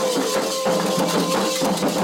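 Candomblé ritual music: a voice holds a long sung note that sinks slightly, over percussion with repeated rattle-like strikes.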